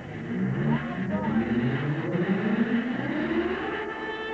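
A pitched sound effect on a stage show's sound track, rising steadily in pitch over about three seconds and leading straight into music.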